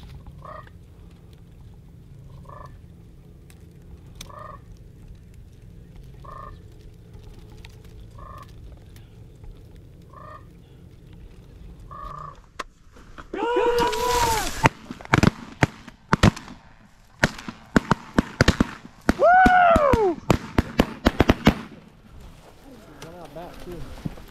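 Sandhill cranes calling: short calls about every two seconds for the first half, then loud, close calls about halfway through. A rapid series of shotgun shots follows over several seconds, with more crane calls among the shots.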